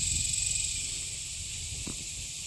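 Steady, high-pitched insect chorus in the trees, a constant shrill drone with a faint low rumble underneath.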